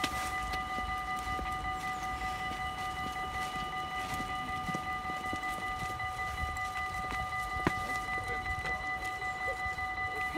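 NS DD-AR double-deck train running slowly in along the platform: a low rumble with a steady high-pitched whine of several pure tones, and one sharp click about three-quarters of the way through.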